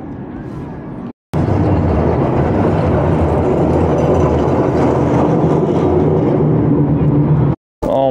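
Blackpool illuminated tram running close past, a steady loud rumble of motors and wheels on the rails with a low hum. It starts abruptly about a second in and cuts off just before the end.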